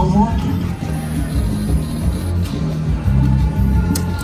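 Loud casino-floor din: slot-machine music and electronic tones, steady and dense, with voices mixed in underneath.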